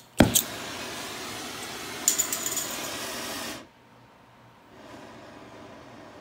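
Oxyacetylene torch with a brazing tip being lit on acetylene alone: a click and a sharp pop as it catches, then a steady rushing flame. The rush cuts off suddenly about three and a half seconds in and comes back softer about a second later.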